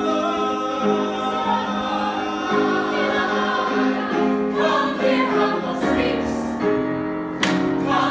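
A small group of voices singing together in harmony, holding long chords that shift from one to the next. There is one short sharp sound near the end.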